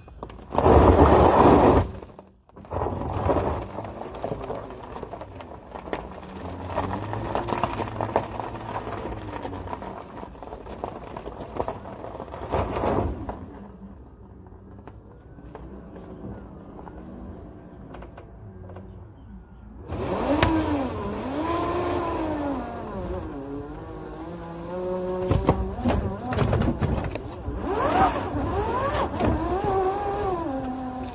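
Nissan Leaf electric drive motor in a converted Mitsubishi L200 pickup whining, its pitch rising and falling in repeated arcs as the truck speeds up and slows. A loud noisy burst comes about a second in.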